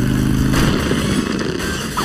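Cartoon sound effect of a small motor humming steadily. About half a second in it gives way to a loud rushing noise.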